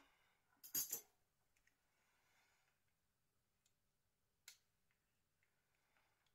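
Small handling noises from working on a Nokia N80 mobile phone with double-sided tape and tweezers: a short scratchy rustle about a second in and one sharp click at about four and a half seconds, with faint ticks, otherwise near silence.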